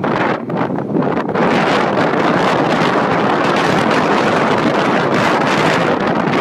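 Loud rush of wind on a phone microphone from a moving car, uneven for the first second or so, then steady.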